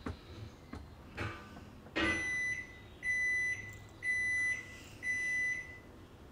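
An electronic beeper sounds four steady, evenly spaced beeps about a second apart, starting about two seconds in. A few short knocks come before the beeps.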